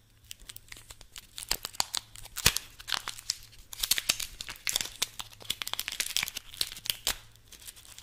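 Scissors snipping into a small printed cardboard box held close to the microphone, the card tearing and crinkling in a quick run of sharp snips and crackles that begins about a second in, the sharpest snap about two and a half seconds in.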